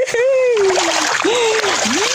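Water splashing as a fishing net is pulled through shallow water with catfish caught in its mesh, under a man's long, drawn-out exclamations.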